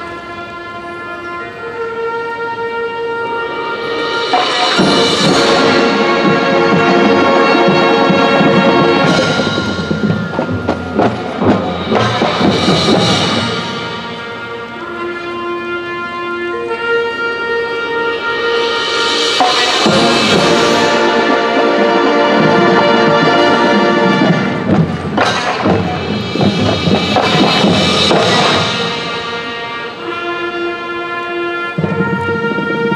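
Marching band playing: sustained brass chords that build twice to loud swells, about five and twenty seconds in, each set off by a percussion hit.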